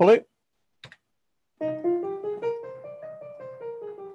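Piano-voiced notes played one at a time on a MIDI keyboard: an E-flat major scale climbing an octave from about a second and a half in, then turning back down near the end.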